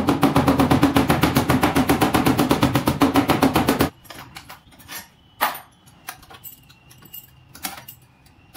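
Small hammer tapping rapidly on the sheet metal of a car's trunk lid, about ten even blows a second for roughly four seconds, then stopping abruptly; it is working the dent while a bridge-type lever dent puller holds the panel out. Scattered light clicks and knocks follow.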